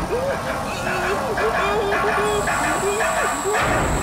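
Stage and crowd noise in a rock club between songs: a string of short pitched sounds that rise and fall, with a steady high whine coming in about halfway through.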